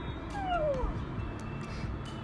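A cat meowing once: a single falling call about half a second long, over background music.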